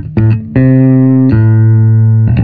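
Five-string electric bass (Freedom Custom Guitar Research RHINO) played through a Hartke HA3500 bass amplifier: a few short plucked notes, then a held note and, about halfway through, a second held note.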